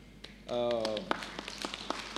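A man's voice speaking briefly into a microphone, then several light taps or clicks.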